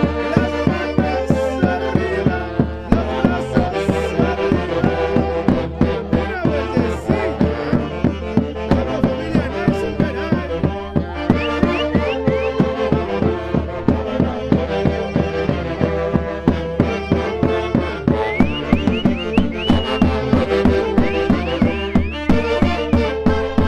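Live dance music from a band of saxophones over a steady bass drum beat struck with a mallet.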